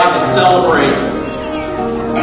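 A voice singing or speaking over soft piano accompaniment.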